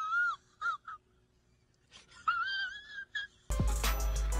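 A high-pitched, wavering wail-like tone with a quick wobble in pitch, heard twice with a short pause and a couple of brief blips between.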